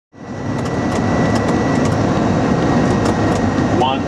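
Steady, loud aircraft cockpit noise on final approach, rising from silence in the first half second. Near the end a synthetic voice begins the automated 'one hundred' radio-altitude callout.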